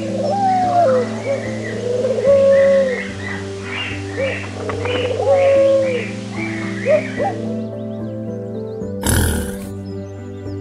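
Rock pigeon cooing: a series of drawn-out calls that swell and fall in pitch, over soft piano music and a steady hiss. The bird sounds and hiss stop about seven and a half seconds in, and a short burst of rushing noise follows near the end.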